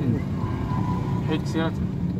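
Low steady hum of a petrol car in motion on a wet street, heard from inside the cabin.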